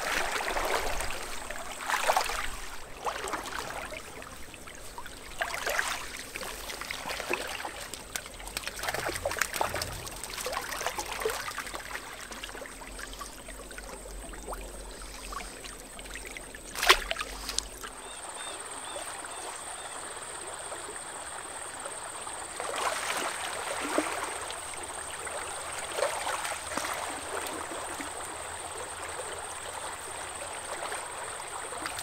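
A small stream running over shallow riffles, with irregular splashes over the first half and one sharp knock about 17 s in. Near 18 s the sound changes to a steadier water sound with a faint, thin high whine.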